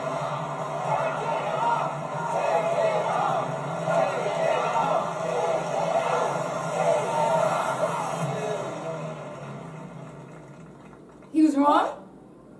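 Television game-show audio: many overlapping shouting, excited voices over music. It fades away after about eight seconds, and a short loud shout comes just before the end.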